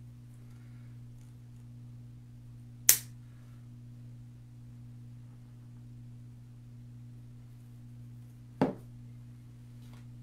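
Wire cutters snipping a floral stem: one sharp, loud snap about three seconds in and a second, smaller one near the end, over a steady low hum.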